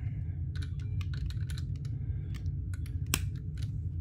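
Plastic snap-connector circuit pieces being handled and pressed onto a plastic base grid: a run of small irregular clicks, with one sharper snap about three seconds in.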